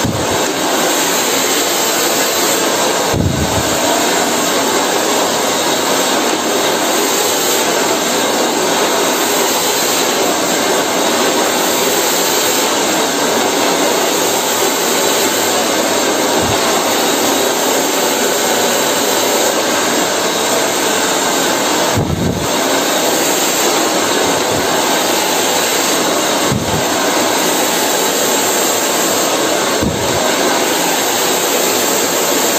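Handheld hair dryer blowing steadily at full power while hair is brushed through with a round brush, with a few brief low bumps along the way.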